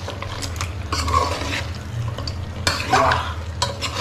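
Metal spoon stirring lobster pieces through thick masala in an aluminium kadhai, scraping and clinking against the pan at irregular moments. The loudest scrape comes near the end.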